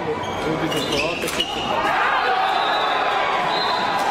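Floorball sticks and the hollow plastic ball clacking on the hall floor, with a sharp shot about a second in, then players shouting as the goal goes in.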